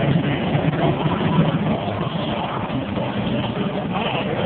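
Monster truck engines rumbling low and steady as the trucks roll slowly across the arena floor, a little louder in the first half.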